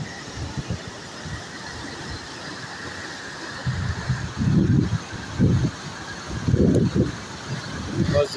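Muddy flash-flood water rushing past in a steady roar. Several low buffets of wind on the microphone come in the second half.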